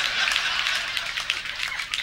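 Audience laughing and applauding, a steady patter of many hands.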